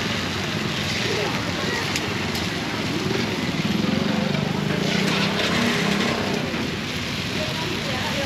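Busy roadside street-market ambience: indistinct background voices over steady traffic noise, with a motor vehicle growing louder in the middle for a couple of seconds.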